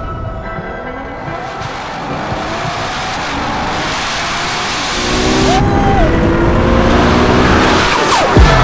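Nissan R35 GT-R's twin-turbo V6 revving and accelerating hard, its pitch rising several times, over background music. It gets louder about five seconds in.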